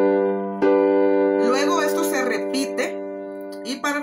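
G major chord played on a keyboard with a piano sound. It is struck again about half a second in, the last of three strikes, and held ringing as it slowly fades. A voice is briefly heard over it in the middle.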